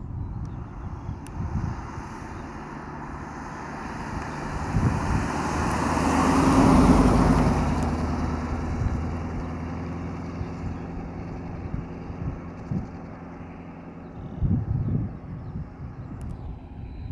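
A classic Edsel convertible driving by on a paved road: its engine and tyre noise build to a peak about halfway through, then fade as the car draws away. A few brief knocks come near the end.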